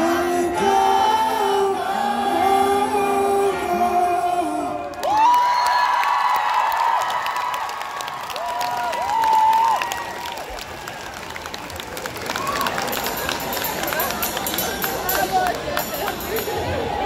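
Live band music with sustained sung notes for about the first five seconds, then, after an abrupt change, a large concert crowd cheering and whooping, with clapping building near the end.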